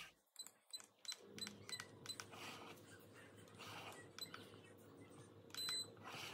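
Faint short electronic beeps from the touch buttons on a Paris Rhône glass electric kettle's handle, a quick run of them in the first two seconds and then sparser, with a louder double beep near the end.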